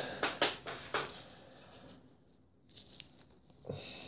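Faint handling noises: a string of small clicks and rustles that thin out over the first two seconds, a brief hush, then a few more light ticks shortly before the end.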